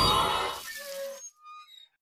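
Cartoon magic sound effect for a wizard vanishing: a whooshing swell that fades away over about a second, followed by a few faint twinkling chime notes.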